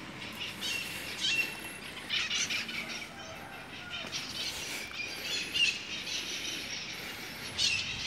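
Small birds chirping in short bouts, several times over, over faint outdoor background noise.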